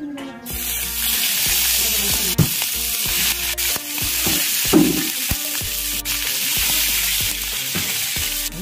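Skewered chicken liver sizzling in hot oil on a tawa. The sizzle starts about half a second in as the meat meets the oil and stays loud and steady, with a few sharp clicks.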